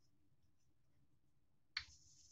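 Near silence, broken near the end by one short, sharp click.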